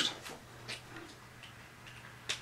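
A few faint, scattered clicks and taps from hands handling a plastic Blu-ray/DVD movie case in its packaging, over a low steady hum.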